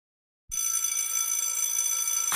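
After half a second of silence, a bright, high bell-like ringing tone made of several steady pitches starts suddenly and is held evenly: a sustained intro tone in the edit's soundtrack.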